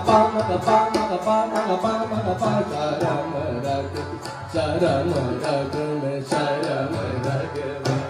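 Hindustani classical music in Raag Yaman: a male voice singing an ornamented melodic line with harmonium accompaniment, over a tanpura drone, while the tabla keeps a steady beat of sharp strokes.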